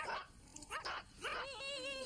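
Small dogs barking in short rising yaps, then a longer wavering call near the end.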